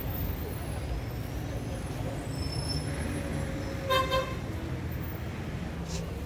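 A vehicle horn gives one short toot about four seconds in, over a steady low rumble of street traffic.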